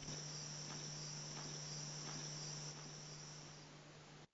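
Steady high-pitched drone of insects chirring, over a steady low hum. It fades down in the last second or so.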